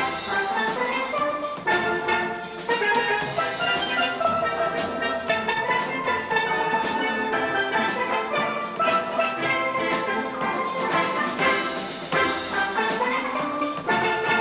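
A steel band playing a soca tune together on many steel pans made from oil drums, with many bright struck notes at once.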